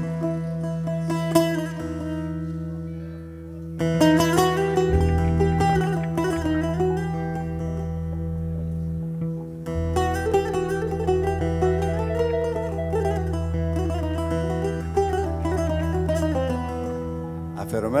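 Live band playing an instrumental introduction: a plucked-string melody with gliding notes over a steady low drone and bass. The music dips briefly, then the melody comes in fully about four seconds in, and a voice starts singing right at the end.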